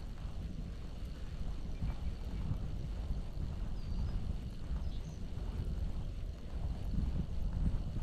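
Wind buffeting the microphone: a steady, unsettled low rumble.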